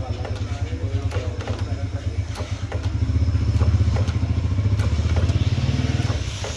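A running engine with a low, fast-pulsing drone that grows louder about halfway through, with a few light metal clicks over it.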